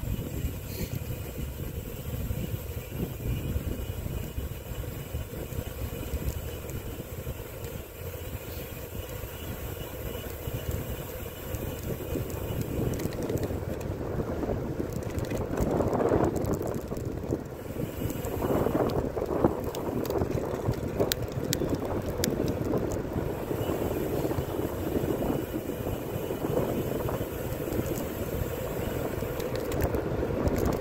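Bicycle tyres rolling on asphalt with wind buffeting the microphone, getting louder from about halfway through as the bike picks up speed, with a few sharp ticks later on.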